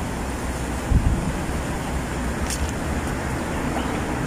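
Wind buffeting the camera's microphone: a steady low rumble with a stronger gust about a second in.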